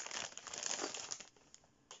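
Plastic sweet packets crinkling as they are picked up and handled, for just over a second.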